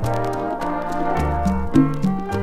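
Salsa band's instrumental intro: a trombone-led brass section holding and moving through chords over a stepping bass line, with regular percussion strokes.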